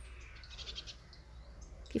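Faint chirping of a small bird in the background over a low steady hum.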